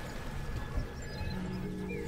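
A steady low rumble with water noise from a boat moving along a canal. Soft lofi background music fades in during the second half.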